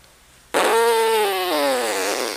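A slow exhale of air held in puffed cheeks, pushed out through pursed lips as a buzzing, raspberry-like tone. It starts about half a second in and sinks in pitch near the end. This is the cheek-squeezed slow blow-out practised as the first step of circular breathing.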